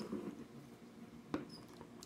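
Quiet handling of a plastic measuring cup and its lid, with one sharp click of hard plastic a little past a second in.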